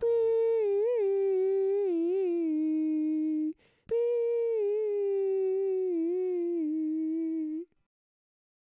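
A man's voice humming two long, wavering notes with no backing. Each note slides slowly down in pitch. There is a short break with a click between them, about halfway through.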